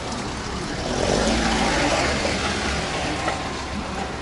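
Vehicle and traffic noise in a busy car park: a steady rushing noise with a low rumble, growing a little louder about a second in.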